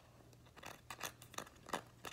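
Fingernails tapping and picking at a dry, crisp cracker: a few sharp little clicks and crackles.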